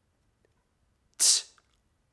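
A man's voice saying an isolated, breathy 't' phoneme once, about a second in, as the first sound of 'tight' being sounded out; the rest is near silence.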